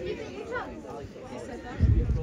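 Faint voices chattering. Near the end a sudden, loud low rumble sets in.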